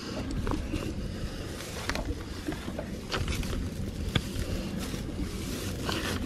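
Low, steady wind rumble on the microphone, with scattered crackles and rustles of dry straw mulch as feet shift in it around a newly planted cutting.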